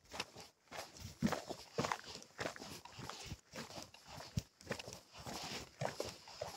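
A hiker's footsteps on a rocky dirt trail, coming unevenly at about two a second over a faint steady hiss.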